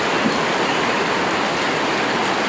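A steady, even hiss of noise at a constant level, with no speech over it.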